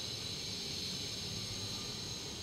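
Steady background hiss of room tone, with no distinct sound event.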